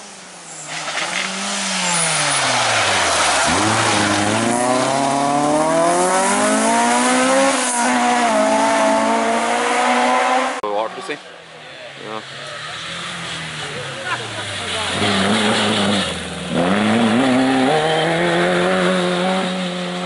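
Rally car engine at full stage pace: the revs drop, then climb hard over several seconds with sharp gear changes. About halfway through it falls away briefly, then pulls up through the revs again.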